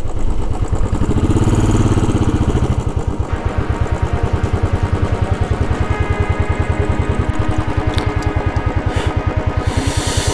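Royal Enfield motorcycle engine running at riding speed with an even, rapid pulse, with background music over it.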